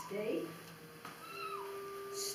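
Dog whining in short, high-pitched calls, one of them held as a long steady tone in the second half, while sitting in a stay.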